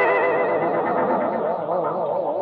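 Electric guitar chord ringing out through a pitch-wobbling modulation effect, its notes wavering evenly up and down as it slowly fades.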